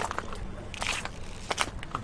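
Several footsteps on a loose gravel and stone path at a walking pace, each a short sharp strike.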